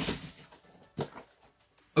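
Handling noise as a Yu-Gi-Oh! tin box is picked up: a rustle that fades within half a second, then a short sharp knock about a second in, followed by a fainter one.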